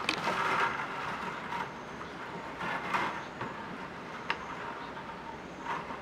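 Thin split-bamboo basket stakes being handled, brushing and clicking against each other in short rustling bursts, with a couple of sharp clicks in the second half.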